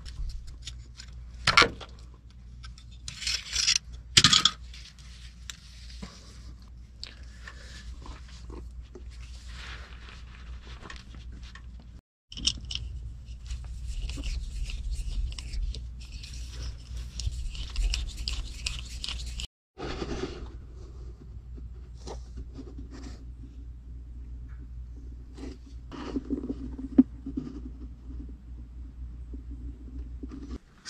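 Hand tools working on metal: a screwdriver and nut driver turning worm-gear hose clamps on a transmission cooler line, with irregular scraping and a few sharp clicks in the first seconds.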